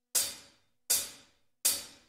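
Three evenly spaced cymbal strikes about three-quarters of a second apart, each ringing briefly and fading, counting in the start of a synthwave song.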